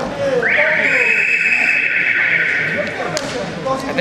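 Electronic timer buzzer in a wrestling hall, sounding one steady blast of about two and a half seconds starting about half a second in: the signal that stops the wrestling at the end of a period. Voices in the hall carry on underneath.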